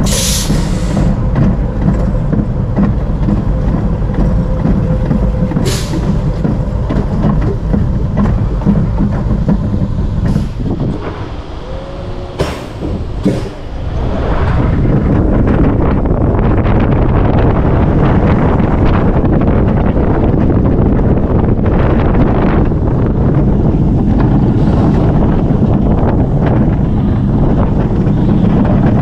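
Vekoma Family Boomerang roller coaster train heard from onboard: a steady mechanical rumble with a faint whine as it is hauled up the lift. About halfway through it goes quieter and a few sharp clicks sound, then a louder, steady rush of wheels on track as the train runs down.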